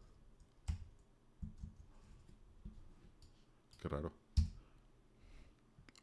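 Computer keyboard keystrokes: a handful of separate sharp clicks spaced irregularly, about a second apart.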